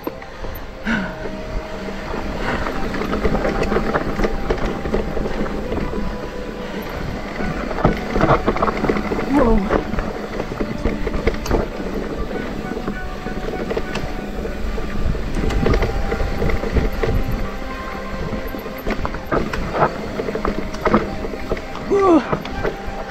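Electric mountain bike ridden along a dirt forest trail, heard from a bike-mounted camera: a continuous rumble of tyres and wind on the microphone, with frequent knocks and rattles as the bike goes over bumps.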